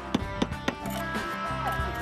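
A hammer tapping a nail into a clay hip cap tile: a few sharp, quick strikes in the first second. Background guitar music plays underneath and carries on alone after the taps.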